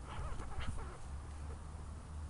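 Dachshund-beagle-terrier mix puppy tugging on a rope toy, giving short whiny vocal sounds in the first second.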